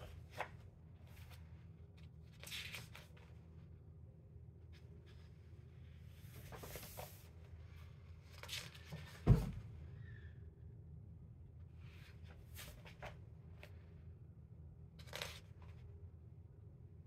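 Pages of a paperback coloring book being turned by hand: a series of short papery swishes and rustles, one every second or two, over a steady low hum. About nine seconds in there is one much louder dull thump.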